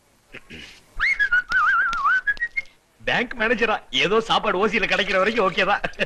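A person whistling a short wavering tune for about two seconds, then a man's voice.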